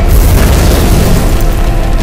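An explosion sound effect: a loud boom that sets in suddenly and rumbles on deep and steady, with music under it.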